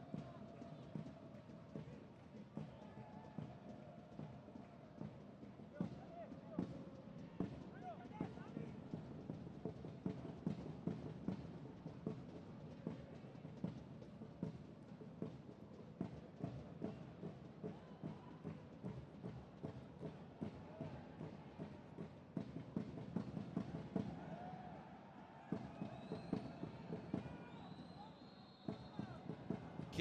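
On-pitch sound of a football match in a near-empty stadium: repeated sharp thuds of the ball being kicked, with players' shouts and calls. Near the end comes a short high whistle, the referee stopping play for a foul.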